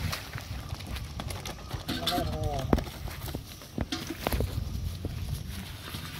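A freshly landed fish flopping on the grassy bank, giving irregular thumps and knocks. A short vocal sound comes in about two seconds in.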